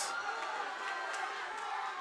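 Crowd cheering and shouting steadily during the closing seconds of a fight.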